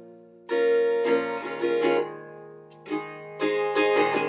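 Ukulele strumming chords, with no voice. A strum comes about half a second in and several follow; after a brief lull in the middle, more strums come near the end.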